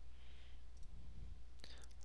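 A couple of faint computer keyboard key clicks from typing a number into a field, over a low steady hum.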